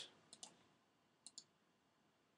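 Faint computer mouse clicks in near silence: a quick pair about a third of a second in and another quick pair just past a second in.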